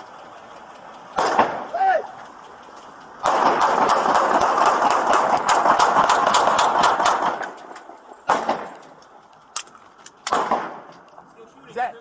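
Police gunfire in a parking-lot shootout: a rapid volley of many shots starting about three seconds in and running for about four seconds, followed by two more single loud cracks.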